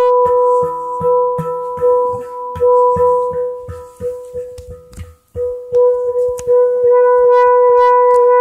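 Aciel handpan: one steel note struck over and over in quick succession, ringing with bright overtones. It dies away almost to nothing just after five seconds, then is struck again and rings on steadily.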